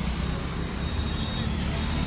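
A small engine running with a low, fluttering rumble, heard from a three-wheeler rickshaw moving through city traffic, with road and traffic noise around it. A faint thin high whine comes in about a second in.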